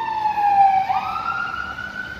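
A siren wailing: one long tone that slides slowly down, jumps back up about a second in, then rises and holds.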